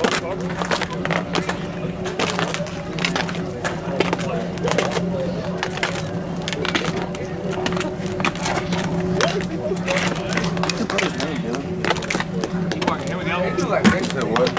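Spectators talking indistinctly near the microphone over a steady low hum, with scattered small clicks and knocks throughout and one sharper knock right at the end.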